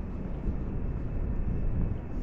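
Steady low outdoor rumble of distant city traffic, with no distinct sound standing out.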